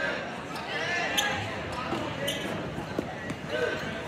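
Indistinct voices of spectators and coaches calling out in a reverberant gymnasium. A few sharp knocks cut through, the strongest about a second in and others near two and three seconds.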